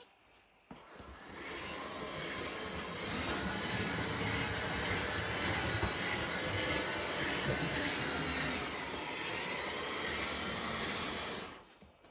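Steady whirring of a remote-controlled motorised camera mount as it moves, starting abruptly about a second in and stopping abruptly near the end.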